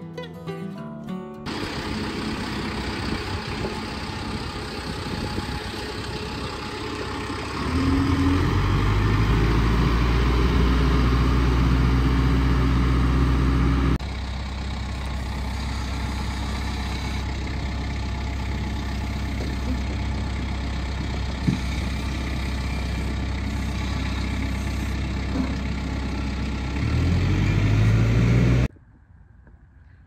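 Engines of the sawmill yard's machinery running steadily, with a hum that rises and grows louder about eight seconds in. The sound changes abruptly at about fourteen seconds, and there is another rise in engine pitch shortly before it cuts off near the end.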